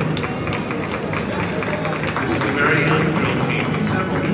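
Music with singing played over an arena's public-address system, with the hoofbeats of horses moving at speed on soft arena footing.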